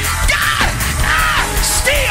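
Gospel praise-break music from a church band, with loud yells repeated over it about every half second.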